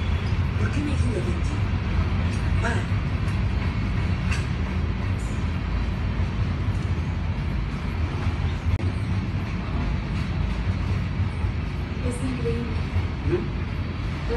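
Ferrosur freight train cars rolling past on the rails, a steady low rumble that runs on without pause.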